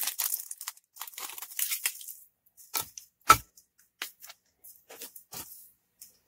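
Clear plastic wrapper crinkling as it is peeled off a tea drop for the first two seconds, then a few light clicks and taps from a plastic reusable K-cup filter being handled, with one sharper click about three seconds in.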